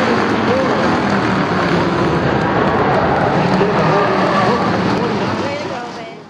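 Several stock car engines running together as the pack laps the oval, loud and steady, with small rises and falls in pitch as drivers get on and off the throttle. The sound fades out near the end.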